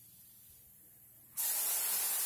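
A sudden burst of compressed-air hiss from the stretch-wrapping machine's pneumatic system, starting about two-thirds of the way in and holding steady: air venting as the pneumatic top pressing plate comes down onto the box.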